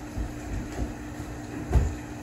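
A steady low hum with a few dull, low thumps, the loudest near the end.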